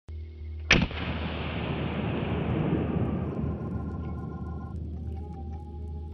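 A single loud gunshot about a second in, its echo dying away slowly over the next few seconds, over intro music with a steady low drone.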